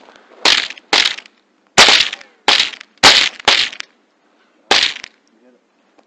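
A rapid, irregular string of about seven gunshots, each a sharp crack with a short fading tail, fired at a jackrabbit, then quiet for the last second.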